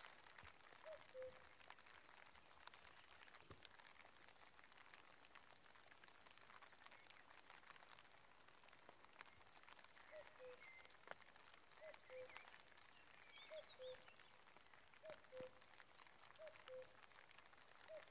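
Faint outdoor birdsong: a bird repeats a two-note falling call, once near the start and then about every second and a half from about ten seconds in. A few higher chirps from other birds and scattered faint ticks sit over a soft hiss.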